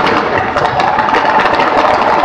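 Fireworks crackling densely, a rapid stream of tiny pops from a shower of sparks.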